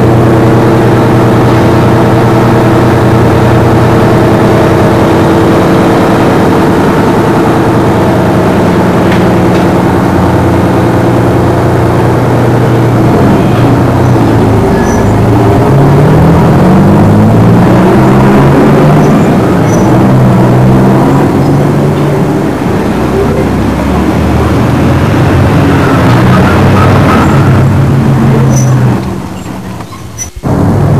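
A motor vehicle engine running loud and close: a steady low hum at first, then its pitch stepping up and down from about halfway through, as when revving or changing gear. It drops away near the end.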